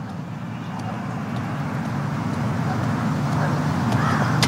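A steady low rumble of outdoor background noise, like distant road traffic, growing slowly louder.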